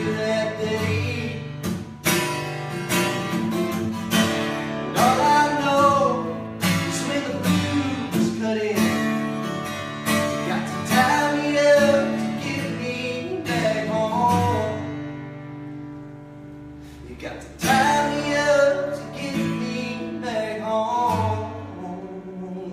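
Acoustic guitar strummed with a man singing over it, a live unplugged song. About two-thirds of the way through the strumming thins out and the sound dips, then full strumming and singing come back in.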